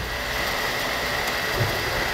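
Anycubic 3D printer running mid-print: a steady whir of fans and motors with a thin, constant high whine.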